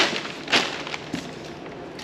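Plastic wrapping and cardboard box being handled as a seat headrest is lifted out: two short crinkles about half a second apart, then a fainter one.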